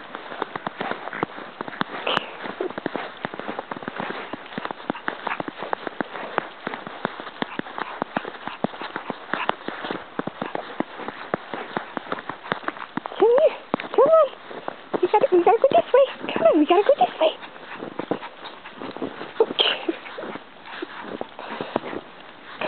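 Footsteps crunching through snow as a person and a small dog walk along a trodden track, a steady run of crackly crunches. Around the middle to late part a voice rises and falls in pitch several times.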